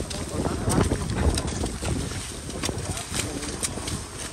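Celery harvest at work: irregular sharp clicks and snaps of a long knife cutting and trimming celery stalks, over a steady low rumble from the harvest machine and wind on the microphone, with crew voices in the background.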